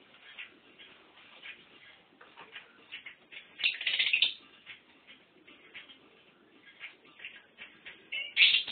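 Lovebird chattering in short, scratchy chirps, with one louder burst of chatter a little past halfway.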